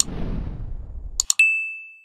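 Subscribe-button animation sound effects: a low rushing whoosh with a click, then two quick mouse-style clicks about a second in, followed by a single bright notification-bell ding that rings on and fades away.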